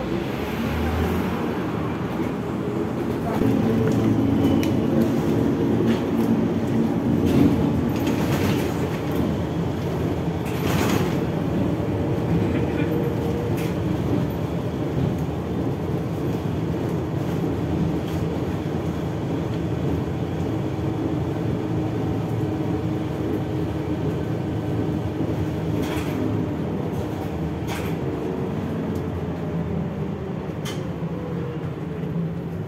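ZiU-682G trolleybus heard from inside the passenger cabin while driving: steady running noise with a motor hum whose tones drift slowly in pitch. A few sharp knocks and rattles from the body stand out, around a third of the way in and again near the end.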